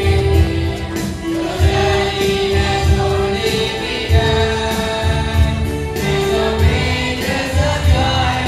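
A school choir of mixed boys' and girls' voices singing together through microphones in unison, with a low rhythmic pulse beneath the voices.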